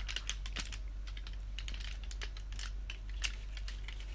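Handling noise close to the microphone: fingers turning a piece of chocolate against a cardboard advent-calendar box, heard as a quick, irregular run of light clicks and taps.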